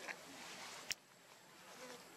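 Faint outdoor ambience with insects buzzing, broken by a single sharp click a little under a second in.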